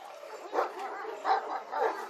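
Large Turkish livestock guardian dogs, a Kangal and an Aksaray Malaklı, barking aggressively at each other in a quick run of about five barks.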